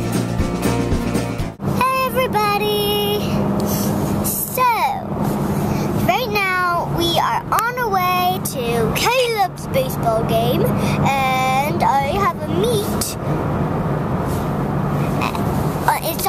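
The end of a sung pop song, cut off about a second and a half in, then a child's high voice talking and exclaiming over the steady low hum of a moving car's cabin.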